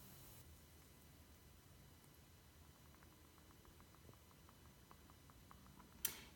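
Near silence: room tone, with faint light ticks in the second half.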